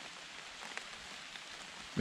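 Quiet, steady outdoor background hiss, with one faint tick a little before a second in.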